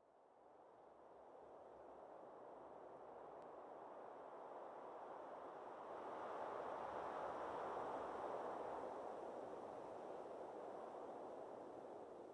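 Quiet, steady rushing of a mountain brook, fading in over the first couple of seconds and swelling a little past the middle.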